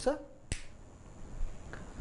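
A single sharp click about half a second in, then a fainter click later: a whiteboard marker's cap being snapped on.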